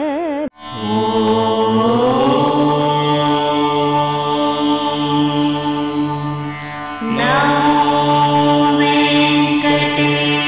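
Indian devotional music. A sung line with a wavering pitch cuts off about half a second in, and chant-like music of steady held tones follows. The held tones dip briefly about seven seconds in and then carry on.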